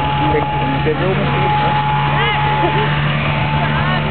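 Snowmobile engines idling at the start line, a steady unbroken drone under the chatter of spectators' voices.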